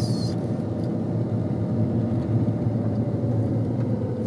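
Steady low rumble of a car driving slowly on a narrow forest road, heard from inside the cabin: engine and tyre noise. A high hiss cuts off a moment in.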